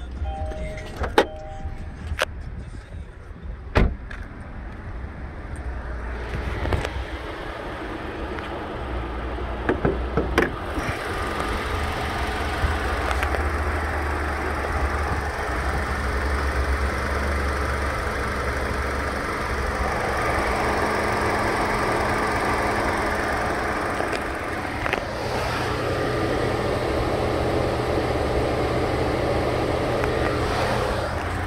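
Kia Soul's four-cylinder engine idling steadily. It grows louder from about six seconds in, as it is heard from the open engine bay. Near the start a two-tone car chime dings for about a second, followed by a few clicks and knocks.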